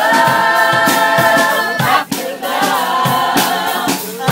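Gospel-style choir singing with music: massed voices hold one long chord for about the first two seconds, then move into a new phrase.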